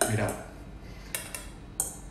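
Metal fork clinking and scraping against a stainless steel mixing bowl while loosening couscous: a few short, light clinks in the second half.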